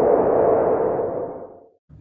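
Title-card transition sound effect: a single ringing tone over a noisy swell. The tone dies away early and the whole sound fades out shortly before the end.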